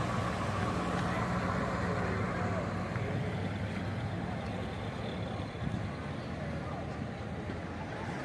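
Checker taxicab's engine running at low speed as it drives slowly past, a low steady engine note that fades after about three seconds, leaving other classic cars' engines running quietly as they pull away.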